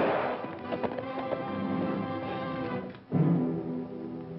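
Dramatic orchestral film score, with a horse's hoofbeats in the first second or so. About three seconds in the music drops away briefly and comes back with a loud new chord.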